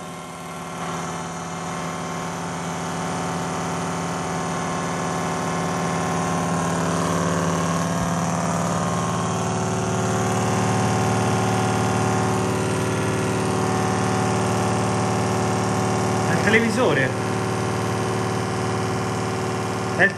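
A steady electrical buzzing hum with many overtones, growing slowly louder over the first ten seconds and then holding. A short voice cuts in over it about three-quarters of the way through.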